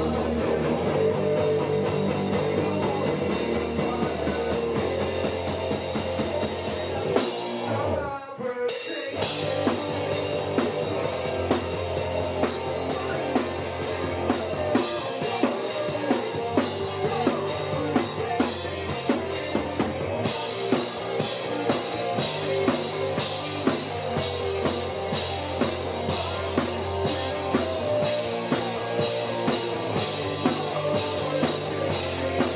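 Rock band playing live with no vocals: drum kit, electric guitar and bass. The music breaks off briefly about eight seconds in, then the full band comes back with steady, regular drum hits.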